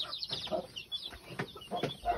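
Hen and chicks in a coop, the hen giving short soft clucks and the chicks high peeps. Two sharp knocks come in the second half.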